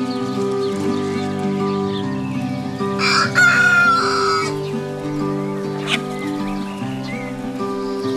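A rooster crows once, about three seconds in, lasting roughly a second and a half, over soft background music with steady held notes. A brief click follows a little later.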